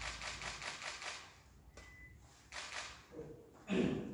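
Camera shutters clicking in rapid bursts, densest in the first second, then in shorter bursts later, with a brief louder sound just before the end.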